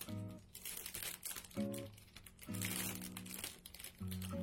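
Clear plastic packaging bag crinkling as hands handle and pull at it, over background music with short runs of pitched notes.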